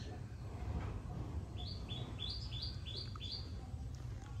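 A bird calling a quick series of about six high chirps, about three a second, each stepping up in pitch, starting about one and a half seconds in.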